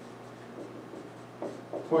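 Dry-erase marker writing on a whiteboard: faint short rubbing strokes as a word is written out, with a man's voice starting just at the end.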